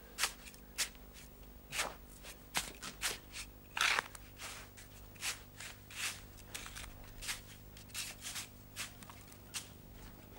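Hands digging and scraping in sand: a string of short, irregular scratchy strokes, about two a second, the loudest about four seconds in.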